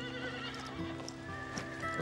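A horse whinnying briefly, a short wavering call near the start, over background music of held notes; a couple of soft knocks follow.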